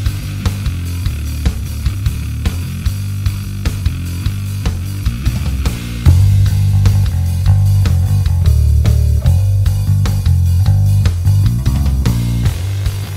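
Electric bass guitar played over a backing track with drums, first through a Line 6 Helix Bighorn Fuzz into a Cali 400 clean amp model and 610 Cali cab sim. About six seconds in the tone switches to a clean Noble Amps preamp, which comes in louder and fuller in the low end.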